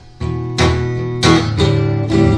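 Acoustic blues guitar strumming chords in an instrumental passage of the song: a short drop in level at the very start, then about four strokes ringing on.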